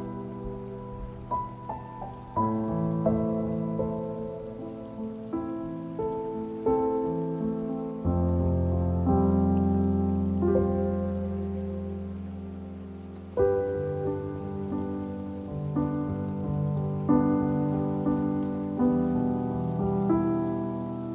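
Slow solo piano music, notes struck and left to ring and fade, with a deep bass note coming in about eight seconds in and changing again about five seconds later. A steady rain sound runs underneath.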